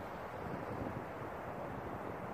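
Steady outdoor background noise with no distinct events, mostly a low rumble of wind on the microphone.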